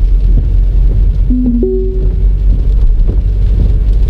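Steady low road and engine rumble inside the cabin of a Citroën C4 Grand Picasso HDi diesel driving at about 40 km/h. About a second and a half in, the car's voice-control system sounds a brief electronic beep.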